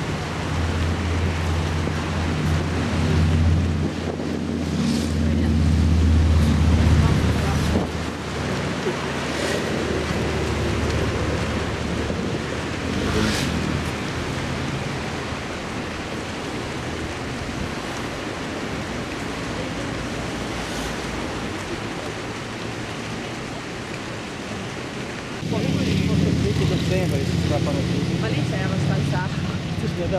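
Wind buffeting the microphone with a steady rush, joined by an engine's low steady hum for the first eight seconds or so and again for the last four or five.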